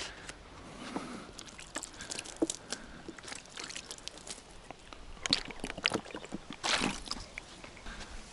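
Dishes being rinsed: water poured from a plastic bottle over a plastic plate and trickling onto the ground, with scattered small clicks and knocks of the dishes being handled.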